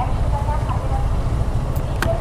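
Motorcycle engine idling steadily, a low continuous rumble.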